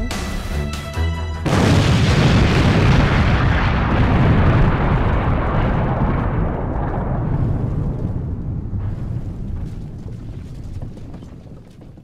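Explosion sound effect added in editing: a sudden loud boom about a second and a half in, then a long deep rumble that slowly fades away over about ten seconds.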